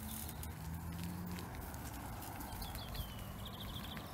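Footsteps on a paved towpath, an uneven run of light taps, over steady outdoor background noise. A small bird calls in the second half, a short high note that falls and then trills.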